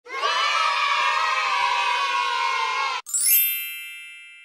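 A group of children cheering together for about three seconds, cut off suddenly, then a bright chime with a quick rising sweep that rings on and fades: intro sound effects over a title slideshow.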